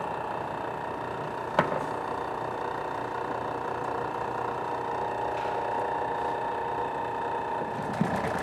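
Large commercial stand mixer running steadily, its motor humming with a flat beater turning through egg whites as hot honey syrup is poured in. A single sharp click about one and a half seconds in.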